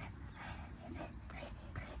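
A dog whimpering and yipping faintly in a few short whines, over a low wind rumble on the microphone.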